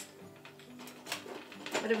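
Soft background music with a few faint, sharp clicks of glass and small rocks as a glass snow-globe dome is moved on its goblet stand.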